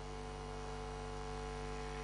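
Steady electrical mains hum with a faint hiss, a constant buzz with several evenly spaced tones, heard in a pause in the speech.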